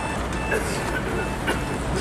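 Steady city street traffic noise with a low rumble, and a faint high beep that comes and goes.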